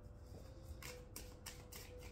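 Tarot cards being handled: a quick run of soft, papery flicks as the cards are shuffled or turned over, in the middle of the second.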